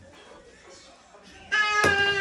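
A toddler's high, held squeal of celebration starts suddenly about one and a half seconds in, after a quieter start. A sharp click comes just after it begins.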